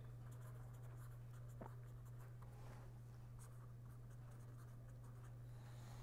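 Faint scratching of a pen writing on paper, in short strokes, over a steady low electrical hum.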